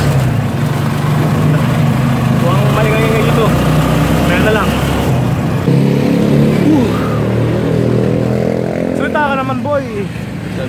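Engine of a passenger vehicle running steadily, heard from inside its cabin, with short bits of talk over it.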